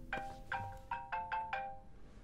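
Mobile phone ringtone: a marimba-like melody of quick struck notes. It stops shortly before the end as the call is about to be answered.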